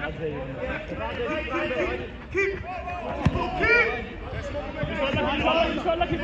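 Men's voices calling out and chattering across a five-a-side football pitch, with a sharp thud of the ball being kicked about three seconds in.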